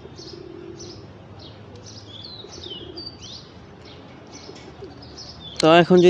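Small birds chirping in the background, a steady run of short high chirps about three a second, some sliding up or down in pitch. A voice starts speaking near the end.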